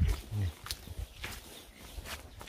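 A brief low voiced call in the first half-second, then a few soft footsteps on a dirt path.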